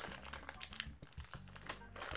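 Quiet, scattered light clicks and crinkles of a plastic candy bag being handled and opened.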